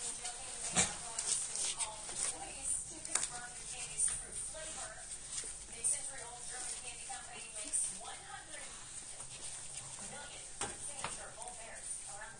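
A litter of newborn American Pit Bull Terrier puppies nursing: wet suckling and smacking, with many short, high squeaks and grunts throughout, and crackling of the newspaper beneath them.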